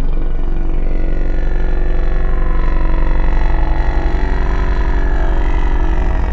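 Loud, sustained orchestral passage from an instrumental musical-theatre soundtrack, a full dense chord over a heavy rumbling low end, with a melodic line gliding through the middle.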